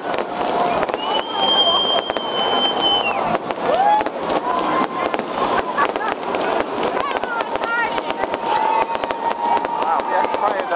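Aerial fireworks going off in a dense string of cracks and pops, with people's voices calling out underneath. A high steady whistle sounds from about one to three seconds in.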